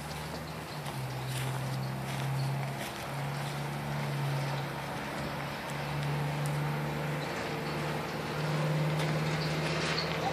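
A steady, low mechanical hum, like a motor or engine running, that steps slightly higher in pitch near the end.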